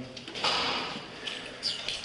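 Heavy jail cell door being opened: a broad scraping rush about half a second in, followed by a couple of short knocks.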